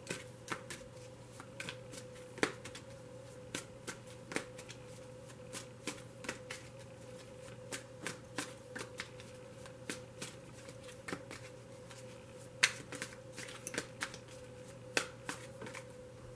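A deck of tarot cards being shuffled by hand, giving irregular soft clicks and slaps of card on card, over a faint steady hum.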